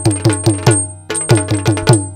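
Yakshagana percussion interlude: chande and maddale drums struck rapidly, about five strokes a second, with a brief gap about halfway through, over the steady ringing of small hand cymbals.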